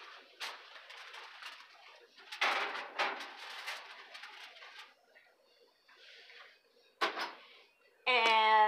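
A roasting pan being set into a wall oven: scrapes and knocks of the pan against the oven rack, a louder scraping clatter about two and a half seconds in, and a sharp knock about seven seconds in as the oven door shuts.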